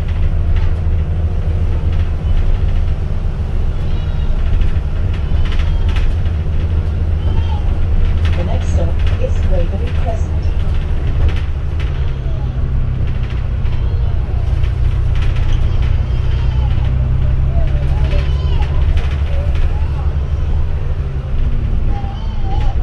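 Double-decker bus engine droning steadily, heard from inside the upper deck, with its note changing about halfway through.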